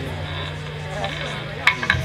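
Low steady tone from the bass guitar rig through the stage PA, fading out about a second and a half in, followed by a few short sharp clicks near the end.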